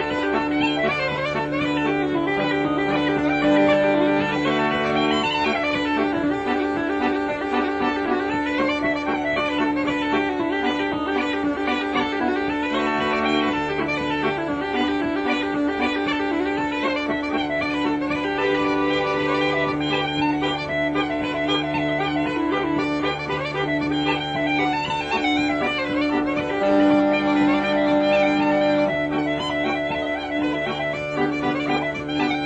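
Uilleann pipes playing a lively tune over a steady drone, with low held chords from the regulators that come in and drop out every few seconds.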